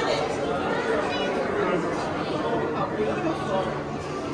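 Background chatter of many people talking at once in a large indoor hall.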